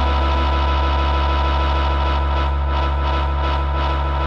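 Live rock band's electric guitar and bass holding one sustained, droning chord over a deep low note, with a faint quick rhythmic pulse coming in during the second half.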